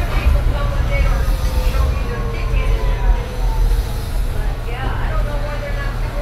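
Inside an electric shuttle bus under way: a steady low rumble with the drive motor's whine slowly falling in pitch over the first few seconds as the bus slows, and passengers' voices.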